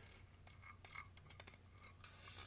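Near silence: faint room tone with a few light ticks of a 3D-printed PLA part being handled.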